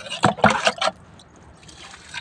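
A red plastic mug dipped into a plastic bucket of water, knocking against the bucket and scooping water with a slosh, a quick run of knocks and splashes in the first second, then quiet.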